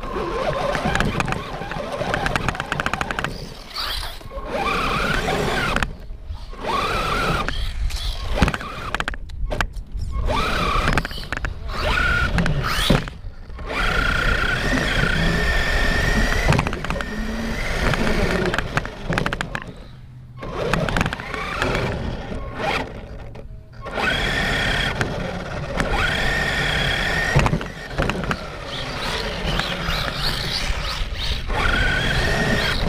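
Electric RC car's motor whining, rising and falling in pitch as it speeds up and slows, over rumbling tyre and road noise. The sound cuts out abruptly several times and starts again.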